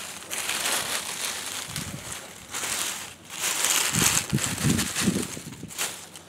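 Dry leaf litter rustling and crunching in uneven bursts as a hand scrapes it away from the base of a tomato plant.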